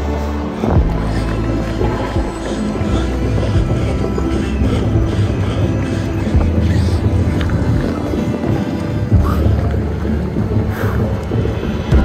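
Background music with sustained low bass notes and held tones.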